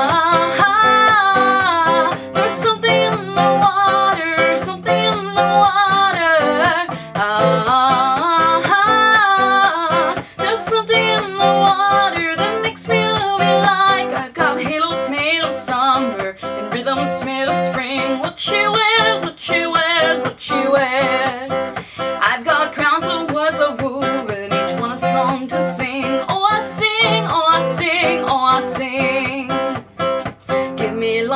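A woman singing over a strummed nylon-string classical guitar in a steady rhythm; the voice is clearest in the first ten seconds or so.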